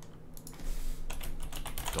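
Typing on a computer keyboard: a quick run of keystrokes that starts about half a second in.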